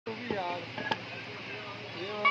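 A meat cleaver chopping onto a wooden butcher's block, with a few sharp knocks, the loudest just under a second in, over people talking.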